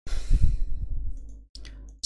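A man sighing close to the microphone: one long breath out that fades over about a second and a half, followed by a short breath just before he speaks.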